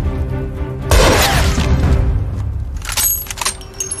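Dramatic film score with a sudden loud crash about a second in that fades out over the next second. Near three seconds come sharp clinks with a high ringing.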